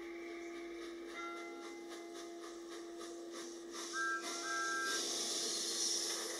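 Soft background music holding long steady notes, with two short higher notes about four seconds in. A hiss of steam from a cartoon steam locomotive rises over it in the second half.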